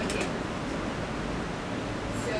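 Room tone in a lecture hall: a steady, even hiss with no distinct events.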